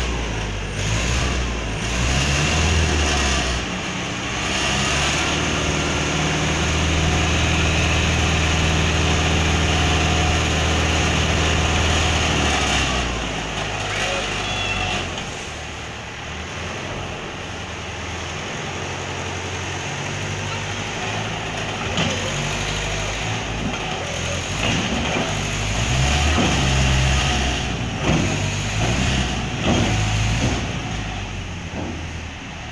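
Tractor engine running while its hydraulic tipping trailer unloads a load of sand: the engine is held at a steady, higher speed for several seconds as the bed is raised, then eases off as the sand slides out, with a few knocks from the trailer near the end.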